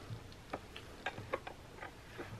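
About five small, sharp clicks at uneven intervals from skateboard wheel hardware being handled on the truck axle as a wheel is fitted.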